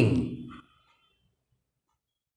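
The last syllable of a man's speech trailing off in the first half second, then dead silence.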